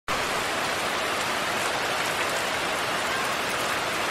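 Heavy rain falling steadily on a muddy dirt path and leafy vegetation: a dense, even hiss with no let-up.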